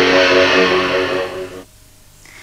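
Television news programme's opening jingle: a loud held musical chord that dies away about a second and a half in.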